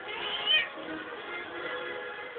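A cat, angered by being teased, lets out one short meow that rises and falls in the first half-second or so, over steady background music.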